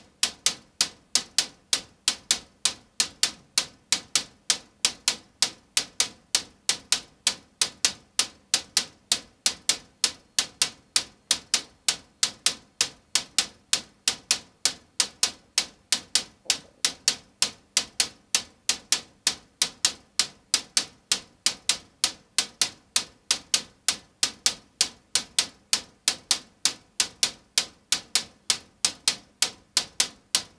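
Synthesized techno hi-hat from a modular synthesizer playing a steady sequenced loop of short, bright ticks, about four a second, each dying away quickly.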